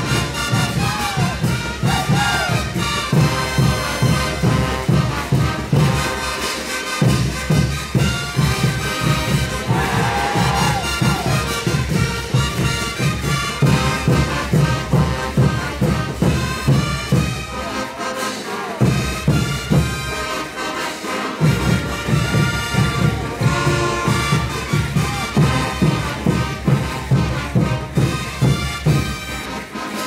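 Brass band playing caporales music, with a strong, steady low drum beat under the horns; the low beat drops out briefly a few times.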